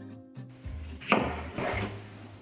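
A chef's knife slicing through a tomato onto a wooden cutting board, one rasping cut about halfway in, over background music.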